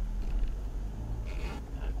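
Steady low engine and road rumble heard inside a car moving slowly on a wet road.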